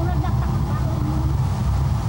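A large rush of water pouring down a slope in a staged flash-flood effect, released from tanks up on the hill, with a heavy low rumble. Faint voices over it.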